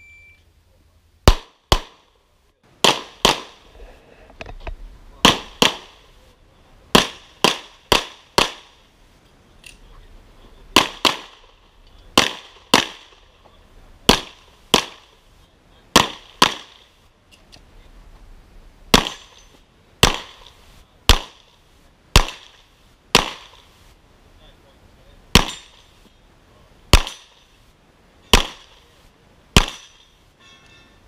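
A shot-timer start beep, then a pistol fired rapidly at targets: sharp shots mostly in quick pairs about half a second apart, with pauses of one to three seconds between groups as the shooter moves between positions.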